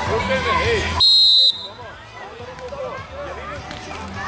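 A referee's whistle blown once, a short shrill blast of about half a second, signalling the kick-off. It sounds over the chatter of children and spectators.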